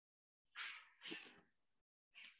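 Two faint short squeaks of a marker writing on a whiteboard, the first about half a second in and the second about a second in.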